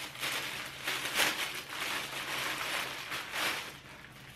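Clear plastic packaging bag crinkling and rustling as it is handled and pulled open, in irregular bursts.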